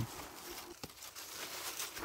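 Faint rustling of cucumber leaves and vines as gloved hands reach under them to pick cucumbers, with a faint click just under a second in.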